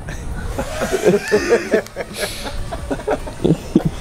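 People chuckling and laughing in short, choppy snatches, with no clear words.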